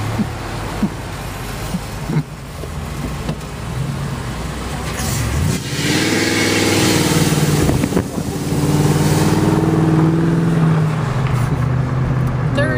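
Car engine accelerating over road noise. About six seconds in, the engine note gets louder and rises slightly in pitch, then holds steady under load.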